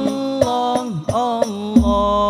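Sholawat al-Banjari performance: male lead vocals sing a sliding, ornamented devotional phrase over rebana frame drums, struck a few times, with a deep bass stroke near the end.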